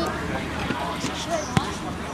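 A football kicked on a grass pitch: one sharp thud about one and a half seconds in, over the scattered calls and chatter of players and spectators.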